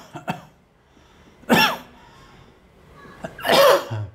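A man coughing twice, about two seconds apart, each cough short and sharp.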